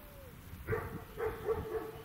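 A dog barking, a short run of barks starting a little under a second in.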